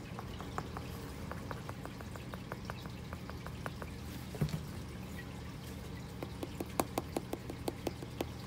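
Fingertips tapping quickly and lightly on the leather palm of a baseball glove, several taps a second, with a louder run of taps near the end. The taps change timbre between a spot with no palm adhesive behind the leather and a spot where factory palm adhesive makes a more solid thump.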